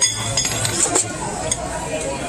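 Busy restaurant dining room: background chatter of diners with a few light clinks of cutlery and dishes.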